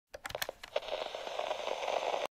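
Logo-intro sound effect: a quick run of clicks, then a hiss that swells in loudness and cuts off suddenly.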